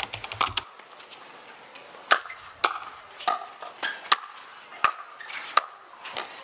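A plastic pickleball popping off paddles in a rally: a quick flurry of clicks at the start, then about six sharp, separate pops, roughly two-thirds of a second apart, from about two seconds in.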